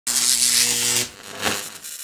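Channel logo intro sound effect: a loud electric buzz over hiss for about a second that cuts off suddenly, followed by a short whoosh that fades out.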